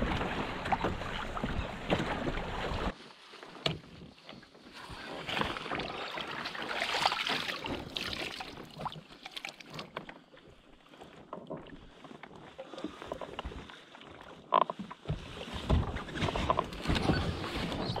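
Wind buffeting the microphone and water splashing against a sailing kayak's hull at sea. About three seconds in it cuts to quieter, uneven water sounds with scattered small splashes.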